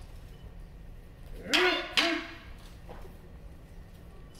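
Two short kiai shouts from kobudo practitioners, about half a second apart and about one and a half seconds in. Each is a brief yell whose pitch rises and then falls.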